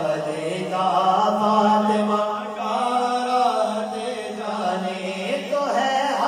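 Men's voices chanting a salam (devotional naat) without instruments: one voice sings a rising and falling melody over a steady, unbroken low drone.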